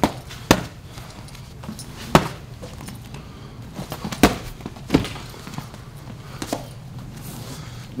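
Boxing gloves smacking against a blocking guard as punches are thrown and caught: about five sharp, separate thuds at an uneven pace.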